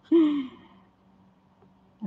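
A woman's short, breathy sigh, falling in pitch, lasting about half a second.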